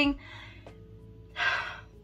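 A woman's single audible breath, about half a second long, a little past the middle, in an exasperated pause between sentences. Faint steady tones sit underneath.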